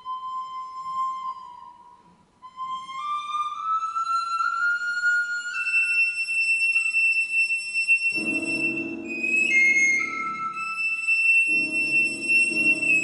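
Recorder playing a high melody of held notes that climb in small steps, unaccompanied at first; piano chords come in about eight seconds in, break off briefly and return near the end.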